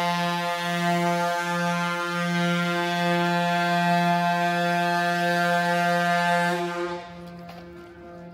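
A large passenger ship's horn giving one long, steady, low blast. It cuts off about seven seconds in, leaving a much fainter ring that lingers.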